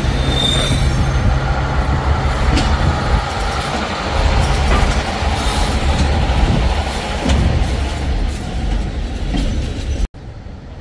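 Red heritage railcar No. 400 rolling past on curved track. Its engine drones steadily for the first few seconds while the wheels squeal in high tones near the start, then the rumble of wheels on the rails, with a few knocks, carries on as it moves away.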